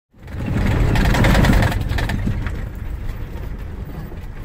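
Off-road safari vehicle driving on a dirt track, heard from inside the cabin: a low engine and road rumble with rattling noise, loudest in the first second and a half, then easing.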